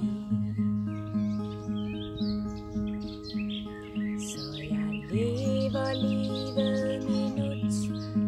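Acoustic guitar playing an instrumental passage between sung lines, single notes picked in a steady pattern about twice a second. Birds chirp faintly behind it.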